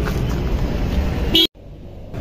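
Motor vehicle engine running with a steady low rumble, then a short horn toot about a second and a half in, after which the sound cuts off suddenly.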